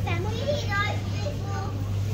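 Children's voices talking in short, high-pitched bits, over a steady low hum.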